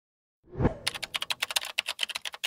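A low thump about half a second in, then a computer-keyboard typing sound effect: rapid key clicks, about ten a second.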